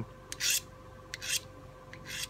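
Carbide pocket knife sharpener drawn along a Smith & Wesson HRT steel knife blade, in about three short, dry scraping strokes under a second apart, honing the edge.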